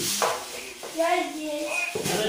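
Rustling of a plastic bag being rummaged through by hand, under short bits of speech.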